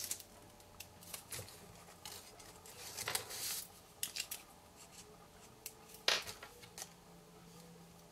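Faint paper handling: a few light rustles and scrapes as mini glue dots are lifted off their roll with a paper piercer and pressed into the corners of a patterned-paper box template. The two loudest rustles come about three seconds in and again about six seconds in.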